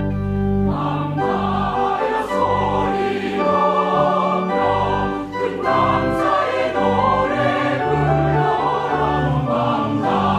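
Mixed church choir singing a Korean choral anthem, coming in about a second in over sustained organ accompaniment.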